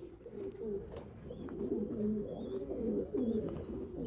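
Domestic pigeons cooing: several low coos overlapping throughout, with a few faint high chirps above them.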